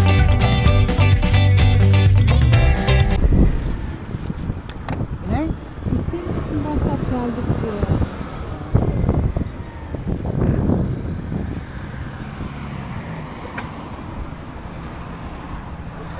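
Background music with a steady beat that cuts off suddenly about three seconds in. Then comes wind and road noise from a scooter being ridden, heard on a helmet-mounted microphone, with faint voices in the middle.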